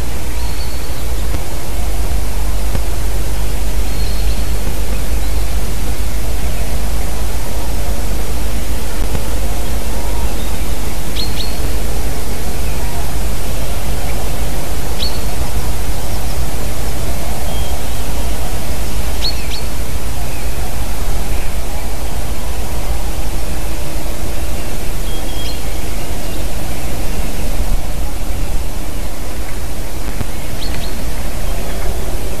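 Steady, loud rush of wind with a deep rumble buffeting the microphone. Faint, short, high chirps of small birds come now and then through the noise.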